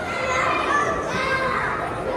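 Children's high-pitched voices calling out and chattering, with no clear words.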